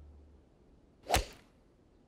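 Golf club swung and striking a ball off the tee: one short, sharp hit about a second in, a cartoon sound effect.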